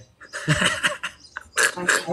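A person laughing: breathy bursts of laughter, two main bouts, with little voice pitch in them.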